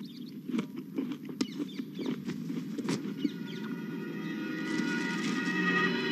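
Quiet film ambience with faint bird chirps and a few small knocks from objects being handled. In the last two seconds a sustained music chord fades in and grows louder.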